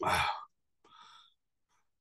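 A man's breathy sigh of about half a second, followed by a faint short breath about a second in.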